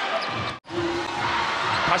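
Basketball arena sound: a ball dribbling on the hardwood court over the steady noise of a crowd in a large hall. The sound drops out for an instant about half a second in, where two clips are joined.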